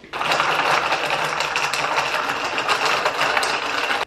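Two glass jars of whipped coffee being stirred briskly with straws: a fast, continuous clinking rattle of the drinks' contents against the glass that stops abruptly.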